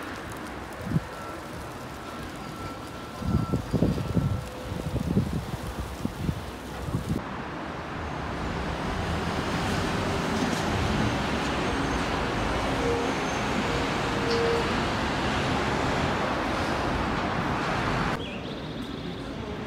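Road traffic going by, with wind gusting on the microphone in low buffets during the first few seconds. About seven seconds in, the sound changes to a louder, steady wash of traffic noise.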